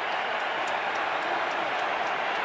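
Steady stadium crowd noise: the even hubbub of a large football crowd, with no single voice standing out.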